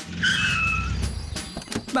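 Cartoon car sound effect: a small car's engine running as it pulls up and stops. A short tyre squeal comes about a quarter second in and lasts about half a second, and the engine dies away after about a second and a half.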